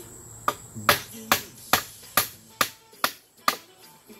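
Hammer blows on wooden deck framing: eight sharp, evenly spaced strikes, a little over two a second, each with a short ring.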